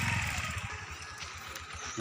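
A small engine running with a fast, even throb that fades away within the first second, leaving only a faint low pulsing.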